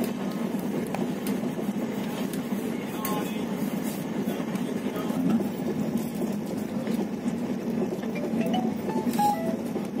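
Steady running noise of a moving passenger train heard from inside the carriage, the wheels rolling on the rails, with a couple of faint clicks about three seconds in and near the end.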